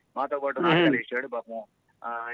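A man's voice speaking animatedly, with a loud, drawn-out stretch whose pitch wavers just before a second in, then a few short syllables.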